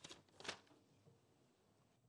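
A brief rustle of handling at a desk microphone, papers being moved, about half a second in; otherwise near silence: room tone of the chamber.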